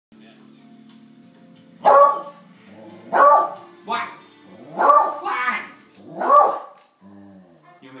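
Excited beagle barking about six times in quick succession, a lot of noise, over faint background music.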